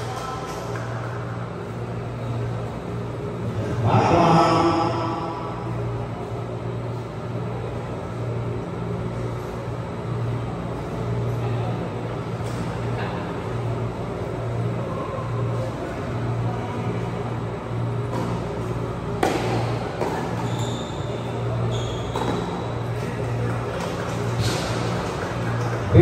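Tennis played in a large indoor hall: scattered racket hits and ball bounces echo over a steady low hum, with a brief voice about four seconds in.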